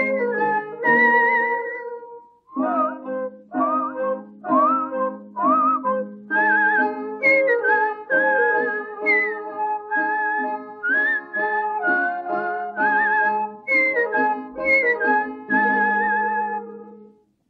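Music from a 1935 Chinese popular song recording: an instrumental passage with a melody line of short sliding notes over plucked strings, in short phrases with a brief pause about two and a half seconds in.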